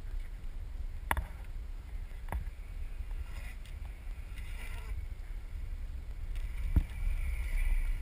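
Wind rumbling on the microphone, with three sharp clicks along the way. Near the end a rising hiss comes in as a longboard's wheels roll past on the asphalt.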